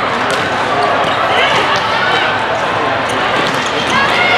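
Indoor volleyball rally: a few sharp ball hits and players moving on the sport court, under overlapping shouts and chatter from players and spectators echoing in a large hall.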